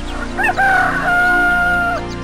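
A rooster crowing once: a cock-a-doodle-doo that rises briefly, then holds a long final note that drops off at the very end. Music plays under it.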